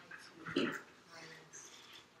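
Faint, indistinct voices in a lecture room, with one short, louder vocal sound about half a second in.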